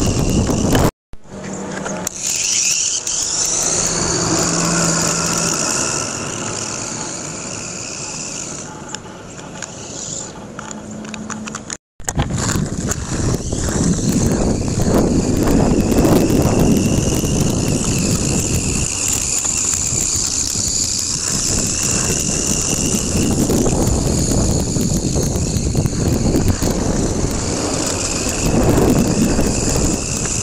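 RC buggy driving on asphalt: a high motor whine that rises and falls with the throttle over a steady rough rolling noise of wheels on the road. The sound cuts out abruptly twice, about one second and twelve seconds in.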